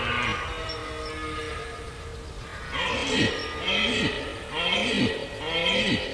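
Red deer stag roaring in the rut: after a quieter start, a run of about four short, deep roars, each falling in pitch, comes roughly one a second from about three seconds in.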